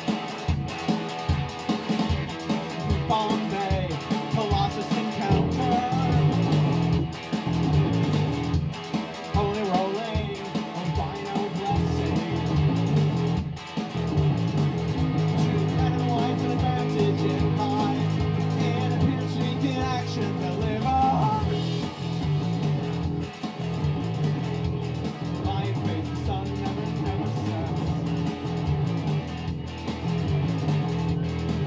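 Live rock music: an electric guitar played over a prerecorded backing track with a steady drum beat.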